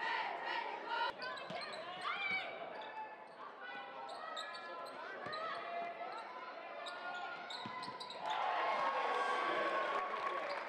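Basketball bouncing on a hardwood gym floor, with voices echoing in the gymnasium. Cheerleaders chant at the start, and the voices grow louder near the end.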